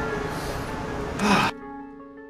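Background music over a noisy hiss, with a short loud burst just before the noise cuts off about one and a half seconds in; clean plucked-string music then carries on, fading.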